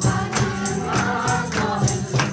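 A women's choir singing an upbeat song to handclaps and a tambourine jingling on a steady beat, about three strokes a second.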